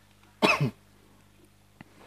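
A single short cough, about a quarter of a second long, in a small room. A faint click follows near the end.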